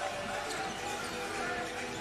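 Basketball being dribbled on a wooden indoor court, under a steady murmur of arena crowd noise.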